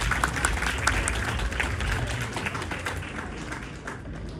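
Applause from a room of people, dense clapping that thins out and fades away toward the end.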